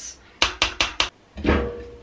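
Four quick knocks of a utensil on the rim of a stainless steel cooking pot, then a duller clatter with a faint ring as the pot's glass lid is handled.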